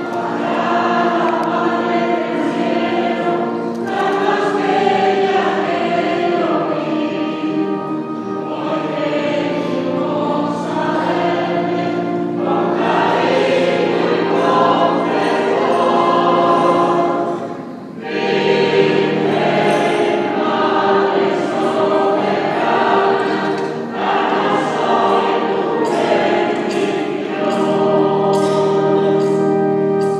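A choir singing a slow hymn over held accompanying notes, phrase after phrase, with a brief break about eighteen seconds in.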